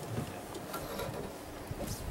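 Faint, steady wind noise on the microphone over quiet open-air ambience, with no distinct event.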